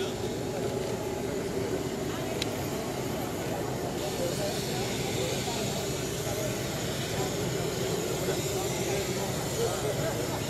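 Indistinct, overlapping chatter of a group of people greeting one another, over a steady background rumble and hiss.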